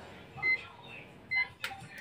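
Two short, high electronic beeps about a second apart, with a sharp click near the end.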